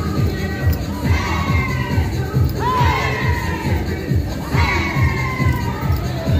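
A group of people shouting and whooping together, three loud calls about two seconds apart, over dance music with a steady thumping beat.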